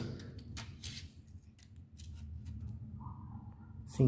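A few faint, sharp clicks and light handling sounds, as a tape measure and paper template are handled on a workbench.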